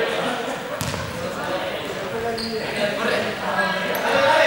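Volleyballs being hit by hands and bouncing on a gym floor, with a sharp smack about a second in and another near the end, amid players' voices echoing in a large sports hall.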